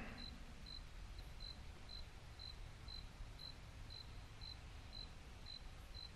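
Quiet room with a faint low hum and a faint, high-pitched chirp repeating evenly about twice a second.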